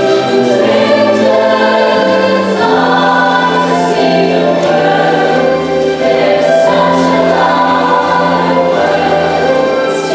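Mixed-voice show choir singing long held chords, the harmony moving to new notes every few seconds, with a few crisp 's' sounds sung together.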